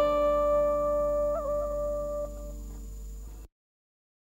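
A single held note on a guitar, the scalloped-fret kind that accompanies vọng cổ, in a karaoke backing track with no vocal. The note is bent with a quick wobble a little over a second in and fades. Then the sound cuts off abruptly near the end, leaving silence.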